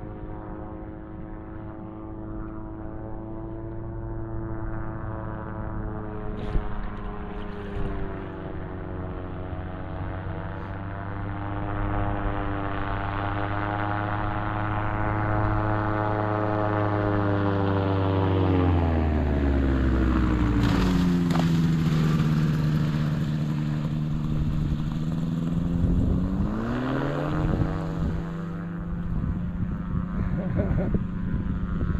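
Light sport seaplane's propeller engine running steadily as it approaches low over the water, growing louder. About two-thirds of the way through, the engine note drops steeply as the pilot throttles back to set down on the water. It rises again near the end as power comes back up.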